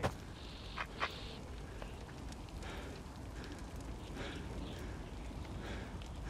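Low, steady rumble of a battlefield after the fighting has stopped, with faint crackling from scattered fires and two sharper crackles about a second in.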